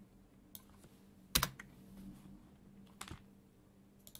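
A few isolated clicks from computer keys, the loudest about a second and a half in, over a faint low hum.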